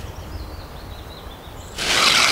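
Low outdoor rumble with a faint bird calling, then near the end a loud, steady, rasping hiss as 50-pound monofilament leader line is stripped off its spool.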